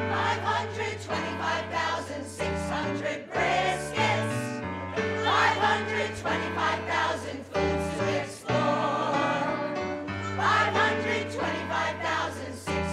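Mixed choir of men's and women's voices singing a short commercial jingle in unison, accompanied by a band with keyboard and a stepping bass line.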